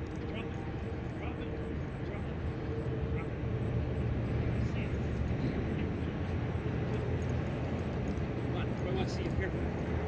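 Distant road traffic: a steady low rumble that grows a little louder a few seconds in.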